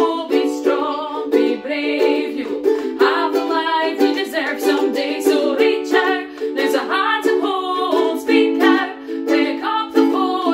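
Two women singing a gentle song together while strumming two ukuleles in a steady rhythm.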